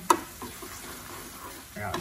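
Instant black bean sauce noodles sizzling in a metal pan on the heat while wooden chopsticks stir them. A single sharp click just after the start, the chopsticks knocking against the pan.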